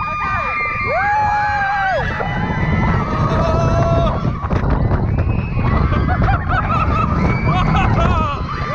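Roller coaster riders screaming and shrieking with long held and swooping cries as the train runs at speed, over the low rumble of the coaster train and wind on the microphone.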